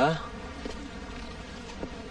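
A steady buzzing hum runs through the pause in the dialogue, after a man's voice ends right at the start.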